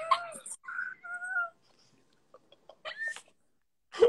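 People laughing hard: short, high-pitched, squealing laughs in a few bursts, with a pause of about a second in the middle.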